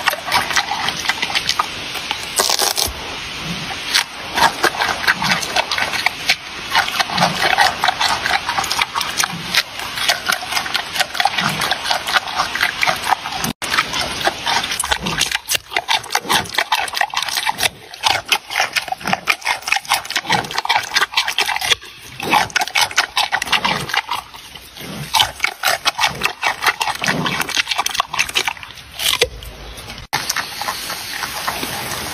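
Giant panda chewing food close to the microphone, a steady rapid run of crunches and bites. After a brief break about halfway through, it is crunching a raw carrot.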